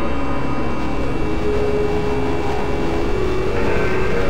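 A dense, steady, machine-like industrial drone from an industrial black metal track, with layered noise and several held tones and no beat.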